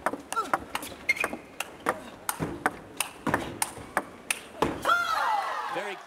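Table tennis rally: the celluloid ball clicks sharply off the table and the rackets about three to four times a second. Shouting voices break out near the end as the point finishes.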